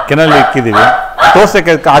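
Kennel dogs barking, several barks in quick succession.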